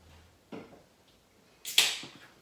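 Washi tape being handled: a faint rustle about half a second in, then a short, loud rasp near the end as the paper tape is pulled from its roll and pressed onto the table.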